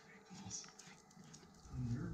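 Border Collie and a small Pekingese–Shih Tzu mix play-wrestling, with scuffling and dog sounds. The loudest low sound comes near the end, as the collie comes right up to the camera.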